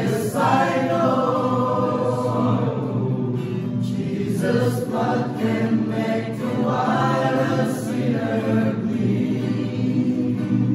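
A group of young men singing a gospel song together as a choir, in long held phrases with short breaks between lines.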